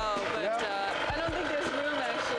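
A person's voice over background music with a steady thumping beat, about two beats a second.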